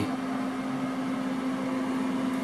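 Electric cabinet food dehydrator running, its fan motor giving a steady hum with an even low tone and a light airy hiss.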